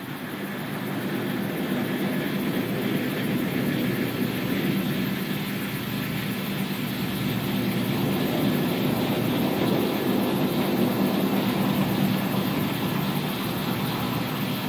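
Falcon 9 first-stage booster's single Merlin center engine firing its landing burn, a steady rumble that swells over the first couple of seconds and then holds.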